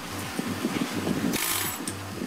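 Power rust-chipping tools rattling rapidly against a rusty steel ship's deck, with a short burst of hiss about a second and a half in.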